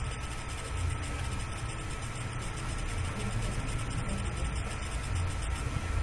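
Steady background noise: a low hum with hiss and a faint, thin, steady whine, with no other event standing out.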